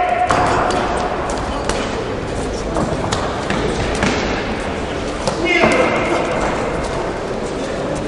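Echoing sports-hall ambience during an amateur boxing bout: a steady wash of crowd and corner voices, broken by several sharp thuds of gloves and feet in the ring. A single raised voice calls out about five and a half seconds in.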